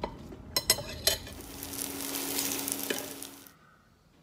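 A few sharp clicks of chopsticks against the dish, then a sizzling hiss with a faint steady hum underneath for about two seconds, cutting off suddenly.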